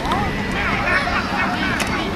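Several voices shouting and calling out at once during a youth football play, over a low steady hum.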